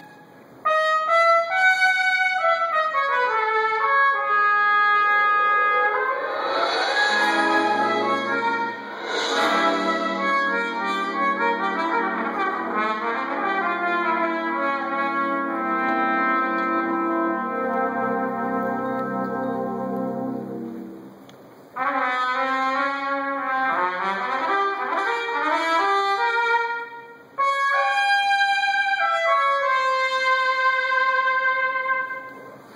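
Solo trumpet playing quick descending runs over a brass band, which holds sustained chords beneath it through the middle. The music breaks off briefly just after the start and again twice in the last third.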